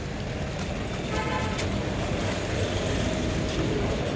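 Steady background rumble of road traffic and a busy public place, with faint, indistinct voices.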